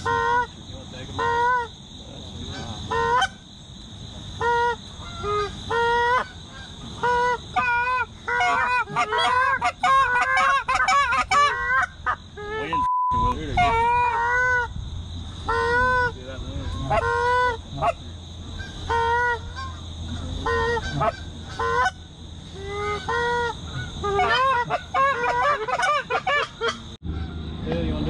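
Canada geese honking, one call after another, the calls crowding and overlapping into a thick chorus about eight to twelve seconds in. The sound cuts out briefly near the middle.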